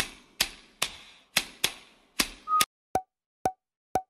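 A rapid series of about ten sharp pop sound effects, two to three a second. The later pops are clipped shorter, and each ends in a brief blip of tone.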